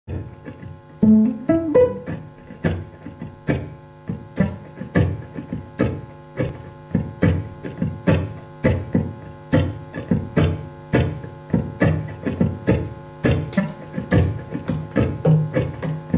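Violin plucked pizzicato and heard through an amplifier: a quick rising run of notes about a second in, then a steady rhythmic pattern of plucked notes, over a faint steady electrical hum.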